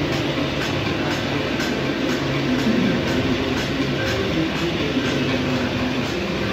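Wood lathe running steadily with a turned wooden workpiece spinning between centres. The steady machine noise carries a faint regular ticking about twice a second.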